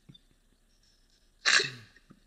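A single sudden, loud burst of breath and voice from a person about one and a half seconds in, fading away over about half a second.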